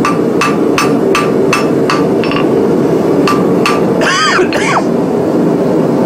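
Hand hammer striking a white-hot, freshly forge-welded bar on the anvil: about nine quick blows, roughly three a second, each with a short anvil ring, refining a faggot weld to make sure it has taken. The blows stop a little before four seconds in, over a steady background roar.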